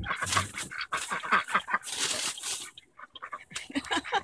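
White Pekin ducks quacking rapidly and repeatedly for the first two and a half seconds, then a few short scattered quacks near the end.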